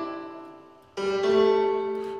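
Software piano played from a MIDI keyboard through the fully wet, Gigaverb-based Verbotron reverb. A held chord fades away, then a new chord sounds about a second in and rings on in a long reverb wash.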